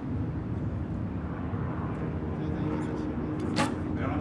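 A steady low rumble of outdoor background noise, then a single short, sharp snap near the end: a recurve bow's string released on a shot.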